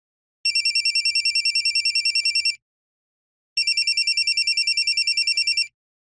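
Nokia mobile phone ringing with an incoming call, a classic trilling telephone ring: two rings of about two seconds each, a second apart, each a fast warble of about ten pulses a second.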